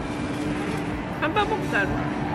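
Indoor food court background noise with a steady low hum. A brief voice comes through about halfway in.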